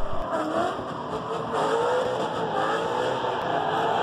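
Car engine-revving sound effect with a wavering, rising and falling pitch and some tyre squeal, used as a channel intro sting.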